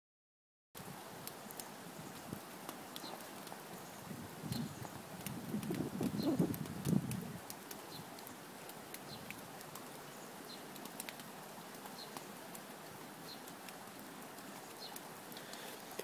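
Light rain: a faint steady hiss with scattered drops ticking, likely on the open umbrella, and a few seconds of low rustling near the middle.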